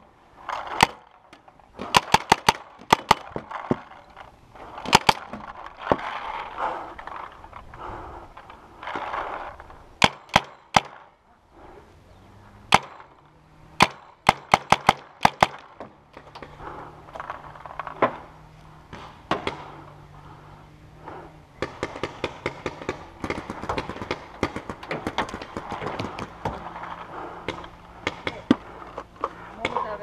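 Paintball markers firing sharp pops in quick runs of two to five shots, repeated through the whole stretch, with paintballs smacking against the wooden bunkers.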